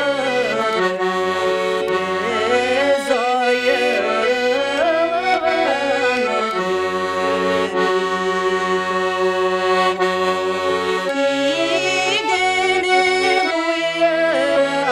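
A button accordion (garmon) playing a Tatar folk tune in sustained chords, with a woman's voice singing a wavering melody over it for the first few seconds and again near the end; in between the accordion plays held chords alone.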